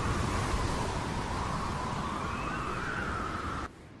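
Sandstorm wind sound effect: a steady rush of wind noise with a howling tone that slowly wavers up and down, cutting off shortly before the end.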